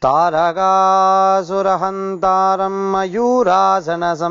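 A single male voice chanting a Hindu prayer mantra in a melodic, sung style, with long held notes that bend and turn in pitch.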